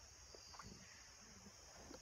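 Near silence, with a faint, steady, high-pitched drone of insects in the woods.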